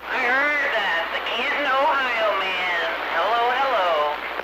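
A woman's voice coming in over a CB radio receiver, thin and narrow-band with a haze of static behind it.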